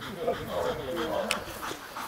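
A German Shepherd makes short vocal sounds that rise and fall in pitch while it carries a bite pillow in its mouth.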